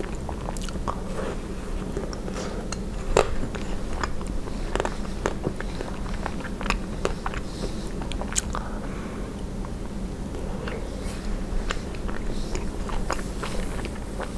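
Close-miked biting and chewing of a strawberry ice cream bar with a pink coating, with a string of sharp cracks as the coating breaks. The loudest crack comes about three seconds in.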